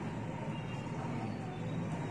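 Steady background noise, a low even room tone with a faint thin hum.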